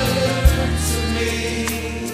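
Live gospel worship music: a choir of singers holding sustained notes over a steady bass, with a strong low hit about half a second in.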